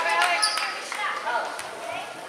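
Gym sounds during a basketball game: several people's voices calling out, a basketball bouncing on the hardwood floor, and a brief sneaker squeak about half a second in.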